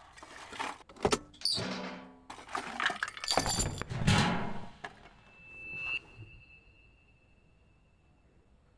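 Clinking and clattering of broken pieces being swept up with a dustpan and dropped into a metal bin. A rising swell then cuts off sharply about six seconds in, with a thin high steady tone over it.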